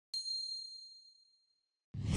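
A single bright, high-pitched ding that rings out and fades away over about a second: a logo-animation chime sound effect. A whooshing rush begins just at the end.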